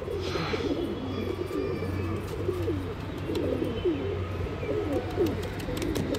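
Domestic pigeons cooing: many short, low, throaty coos that overlap one after another throughout. A brief rush of noise comes near the start.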